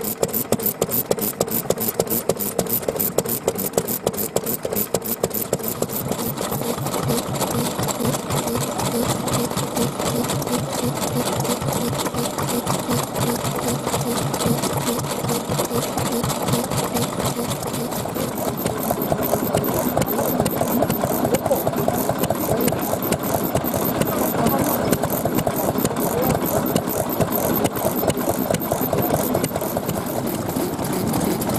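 Vintage Japanese single-cylinder kerosene stationary engines running with a steady, rapid mechanical clatter of firing and exposed valve gear. The sound changes a little after halfway, as a different engine comes to the fore.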